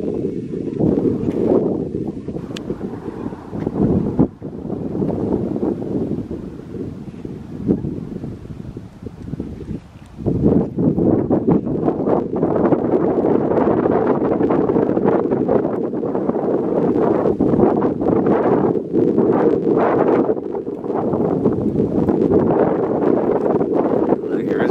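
Wind buffeting the camera's microphone in uneven gusts, growing louder and steadier about ten seconds in.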